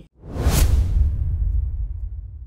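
Logo-sting sound effect: a whoosh that swells quickly, peaks about half a second in and sinks into a deep rumble that fades out over the next second or so.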